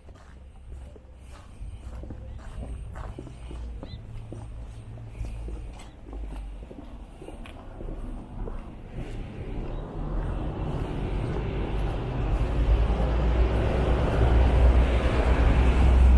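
Street ambience while walking: a car approaching along the road, its tyre and engine noise swelling over the second half and loudest near the end, over a low rumble.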